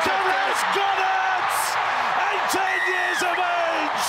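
Stadium crowd cheering loudly with excited TV commentators shouting over it, as a match-winning field goal goes over in a level rugby league match.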